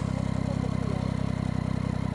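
Triumph motorcycle engine idling steadily at a standstill.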